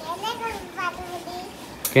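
A toddler's voice, soft high-pitched babbling sounds with no clear words, and a sharp click just before the end.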